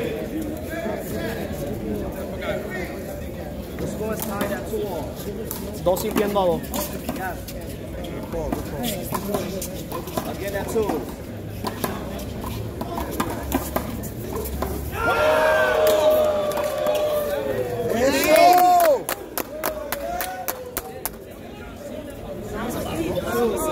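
Voices of players and onlookers at a handball court: talk and chatter, rising to loud drawn-out shouts in the last quarter, with a few sharp clicks among them.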